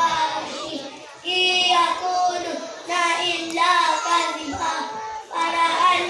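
A group of young children singing together in unison, in phrases of a second or two with short breaks between them.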